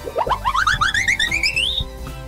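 Cartoon-style comedy sound effect: a quick run of short notes climbing steadily in pitch for about a second and a half, over background music.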